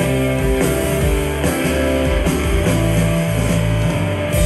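Live rock band playing an instrumental passage: electric guitars, bass guitar and drum kit, loud and steady, heard from the audience.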